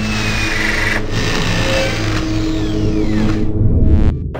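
Logo-intro sound design: a vehicle engine running and revving under music, steady throughout and stopping abruptly at the end.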